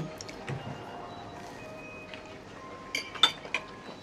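Quiet room tone at a dining table, with a few light metallic clinks of a fork about three seconds in.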